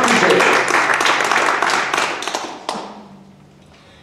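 Audience applauding at the end of a song, dying away about three seconds in.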